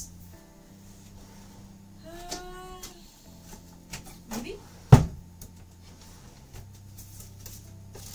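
A single sharp knock about five seconds in, like something hard being shut or set down, over faint background music. A short rising squeak comes a couple of seconds in.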